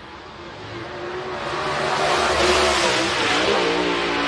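Dirt super late model race car's V8 engine at full throttle, sliding through a turn of a clay oval. It grows louder over the first two seconds or so and then holds steady and loud.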